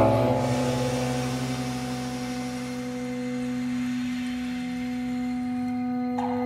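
Electronic music: a sudden struck hit at the start that rings on as a held chord of steady tones, its lowest tone fading away slowly.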